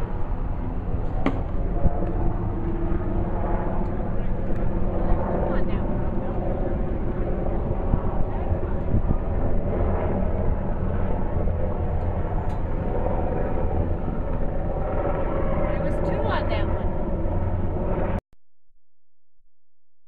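Indistinct voices of an outdoor crowd of spectators over a steady low rumble, cutting off abruptly near the end.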